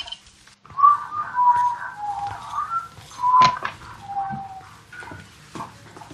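Someone whistling a short tune of several held notes that slide from one to the next, with a sharp click about three and a half seconds in.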